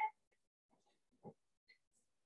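Near silence: room tone, with one faint short sound just over a second in.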